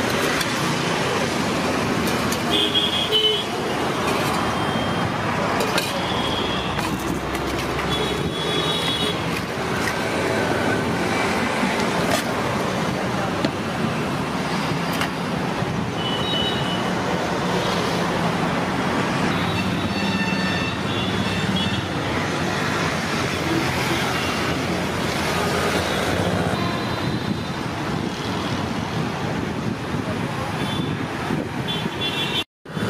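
Steady hum of traffic on a busy city road, with short horn toots now and then and a few light clinks of steel serving ware.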